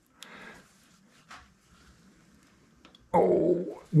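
A quiet stretch with faint handling sounds as the three-jaw lathe chuck is turned by hand, then, about three seconds in, a man's low drawn-out hum or murmur.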